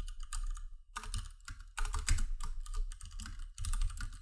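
Typing on a computer keyboard: quick runs of key clicks with a couple of short pauses, as a message is typed out.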